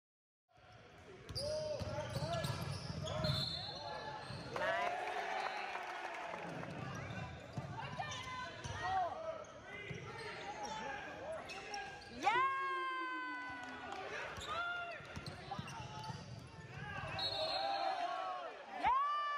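Basketball game in a gym: a ball bouncing on the hardwood court and sneakers squeaking, the loudest squeal about twelve seconds in, with voices of players and spectators throughout. A referee's whistle sounds near the end.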